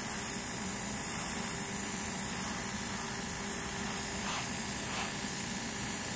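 Airbrush spraying grey surfacer onto plastic model parts: a steady hiss of air and paint.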